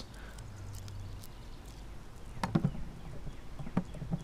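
A few faint knocks and clicks from a small quadcopter being handled and set down on a plastic bucket, with its motors not running; a cluster of clicks comes a little past halfway and another near the end.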